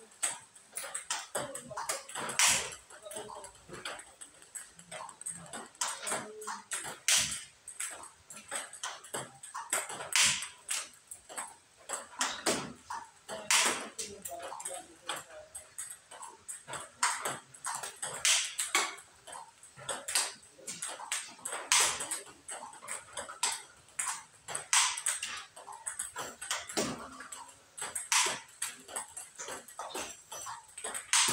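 Table tennis multiball drill: quick clicks of the ball off the bats and the table, with a louder, sharper crack of a forehand smash about every three seconds.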